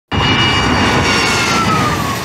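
Su-35 fighter jet taking off, its twin turbofan engines loud and steady, with a high whine that falls slowly in pitch.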